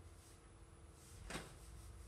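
Near-silent room with one short, sharp tap a little over a second in.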